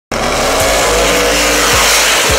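Drag racing car launching and accelerating hard at full throttle down the strip, its engine loud, with a pitch that rises.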